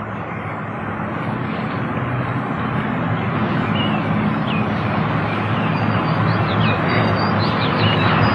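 A steady low rumble that slowly grows louder, with short high bird chirps from about halfway in.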